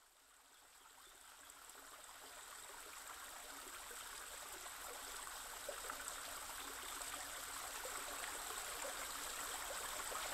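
A stream's running water, a faint steady rushing hiss, fading in slowly from silence about a second in and growing gradually louder.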